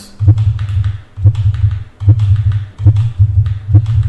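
Computer keyboard keystrokes, single presses spaced unevenly, one or two a second, as text is edited in a terminal, over a low rumble that swells and fades with them.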